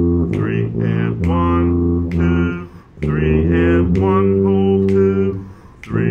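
Tuba playing a simple waltz melody in E-flat major and 3/4 time. It plays sustained low notes in short phrases, with a brief break for breath about halfway through and another just before the end.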